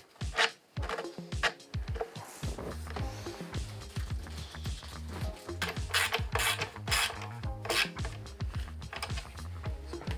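Socket ratchet clicking in short strokes as the rear shock's mounting bolts are tightened, over background music.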